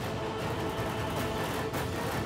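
Dramatic background score: sustained tones over a low rumble, with light percussive hits.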